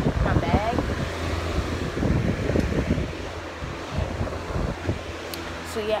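Rustling and handling noise right at a hand-held phone's microphone, with many small knocks and crackles in the first few seconds and a brief murmured voice just after the start, over a steady low hum.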